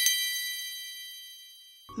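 A bright, bell-like chime sound effect: a quick cluster of high strikes, then several high tones ringing together and fading away over about two seconds.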